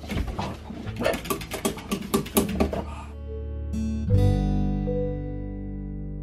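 Background music with acoustic guitar throughout. Over it, for the first three seconds, a pug barks in a rapid string of short, sharp barks, then only the music is left.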